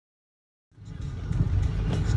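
Car cabin sound while driving in the rain: a steady low road-and-engine rumble with the hiss of tyres on a wet road. It cuts in suddenly a little under a second in.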